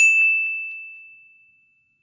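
A single bell-like ding, struck once and ringing on one high tone that fades away over about a second and a half: a chime sound effect for a closing logo.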